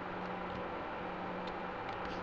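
Steady low hiss with a faint hum underneath: room tone.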